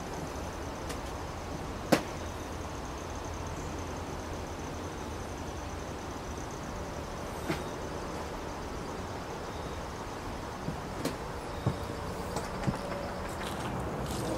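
Steady outdoor background hiss with a faint, steady high-pitched tone, broken by sharp clicks: a loud one about two seconds in, another around the middle, and a quick run of smaller ones near the end.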